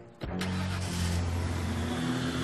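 Cartoon sound effect of a car engine starting and running, which comes in suddenly as a steady hiss over a low hum.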